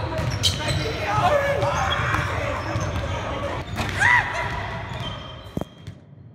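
Basketballs bouncing on a hardwood gym floor, echoing in the large hall, with sharp thuds scattered through. The sound cuts off suddenly shortly before the end.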